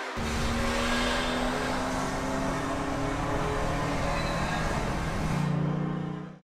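Music mixed with a car engine accelerating, its low note climbing slowly and steadily.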